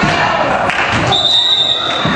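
A referee's whistle blown once, a steady high note held for about a second, stopping play. Under it are crowd voices and a basketball bouncing on the gym floor.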